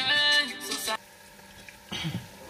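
Chopped onions frying in hot oil in a pot, with a faint steady sizzle. A held musical tone plays over the first second and cuts off suddenly.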